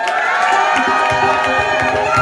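Electronic music starting live on stage: sustained synthesizer chords swell in, and a fast pulsing electronic beat joins about a second in. An audience cheers underneath.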